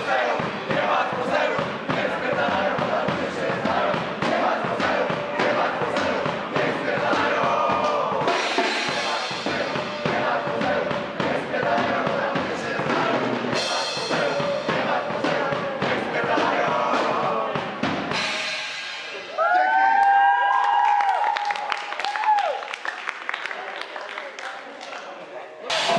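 Heavy metal band playing live, loud and fast with pounding drums and cymbal crashes, until the song ends about three quarters of the way in. The audience then shouts and cheers, with some clapping.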